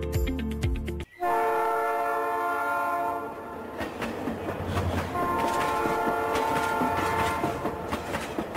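A music sting cuts off about a second in, and a train horn sounds two long blasts over the clatter of a train rolling along the rails.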